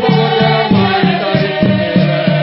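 A song with voices singing together over a steady beat of about three strokes a second.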